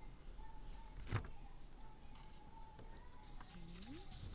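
Faint sounds of a woman eating a coffee cherry: a single sharp click about a second in as she bites it, then a short rising closed-mouth 'mm' near the end while she chews. A faint steady high whine runs underneath.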